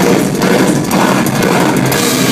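Live heavy metal band playing loudly: distorted electric guitars and drums, with a short dip in level a little before the middle.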